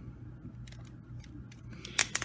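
Plastic action-figure parts clicking as the figure is handled: scattered faint clicks, then a quick run of sharper clicks near the end.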